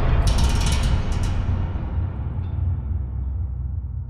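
Trailer-style sound effect under a closing title card: a deep low rumble slowly dying away, with a burst of mechanical clicking and rattling in the first second.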